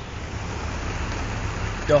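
Floodwater rushing, a steady full rushing noise with a low rumble underneath.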